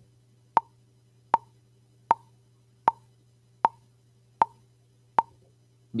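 Drum machine playing a single bongo sample once per beat at 78 bpm: seven short, evenly spaced strikes, a steady tac-tac pulse marking quarter-note beats.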